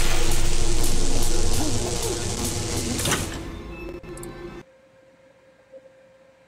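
Horror-film soundtrack from an electroshock-treatment scene: music over a loud, harsh noise with a faint voice, fading after about three seconds and cutting off abruptly about four and a half seconds in.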